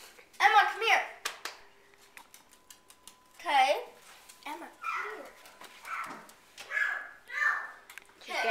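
A young girl's voice in short bursts of unclear vocalizing, with a run of light clicks and taps between about one and three seconds in.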